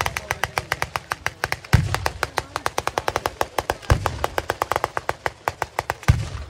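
Ground-level fireworks firing a rapid string of sharp cracking bangs, about nine a second. A deeper boom comes about two seconds in and another about four seconds in.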